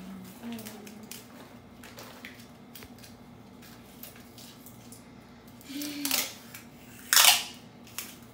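Adhesive tape being peeled and pulled off its roll: faint crackles, a rip about six seconds in and a louder, short rip just after seven seconds.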